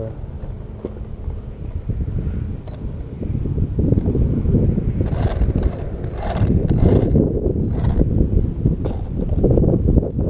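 Wind buffeting the camera microphone in a loud, uneven low rumble that strengthens about three and a half seconds in, with a few light knocks from the RC truck being handled.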